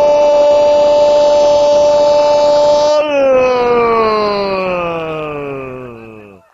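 A football commentator's long, held goal cry, "gooool": one shout sustained at a steady pitch for about three seconds, then sliding slowly down in pitch and fading away near the end.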